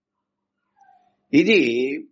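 Silence for over a second, then one short voiced sound, a little over half a second long, that rises and falls in pitch.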